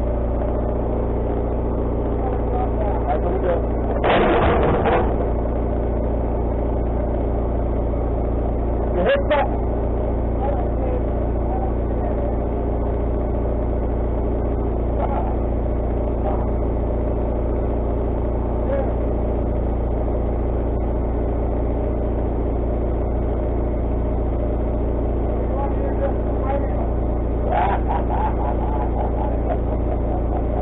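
Wood-Mizer LT40HD sawmill engine running at a steady speed. Louder knocks and scrapes come about four seconds in and again about nine seconds in as a heavy slab is worked off the log.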